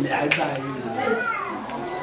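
Speech: a man talking, with children's voices mixed in around him.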